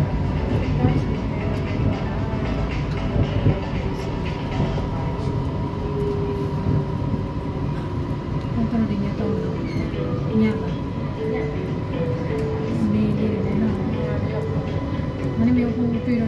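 Kuala Lumpur MRT train running along elevated track, heard from inside the car as a steady rumble with a constant thin whine. From about halfway through, a simple melody plays over it.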